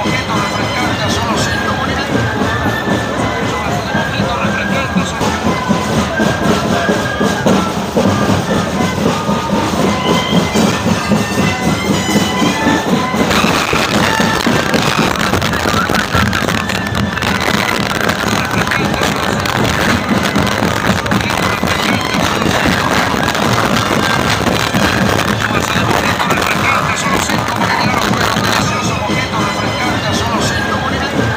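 A moseñada band playing on the march: a group of moseño flutes sounding a held, reedy melody together over a steady drum beat. About halfway through, the sound turns brighter and busier.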